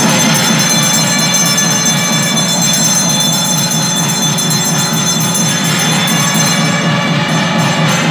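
Temple bells ringing continuously over loud devotional music during the aarti, the lamp offering waved before the deity.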